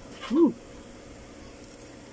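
A person's short closed-mouth "hmm" of appreciation while tasting food, its pitch rising then falling, about half a second long near the start; then only low background.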